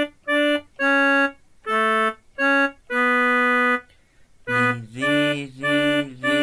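Electronic keyboard playing a slow melody in a sustained, organ-like reed tone: single held notes one at a time with short breaks between them, one note held longer about three seconds in. After a brief pause near four seconds, a quicker run of notes follows with a lower tone underneath and a slight waver in pitch.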